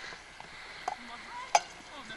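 Sticks knocking on a can and on each other in a game of Old Sow: a few sharp knocks, the loudest about one and a half seconds in. Faint voices of the players are heard between them.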